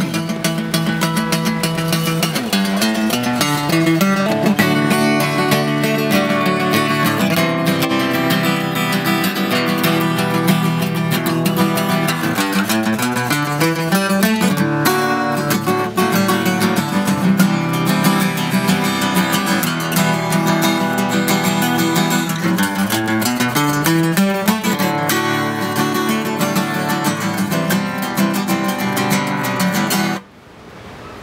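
Live acoustic band music led by strummed acoustic guitar, in a steady rhythm without singing, stopping right at the end.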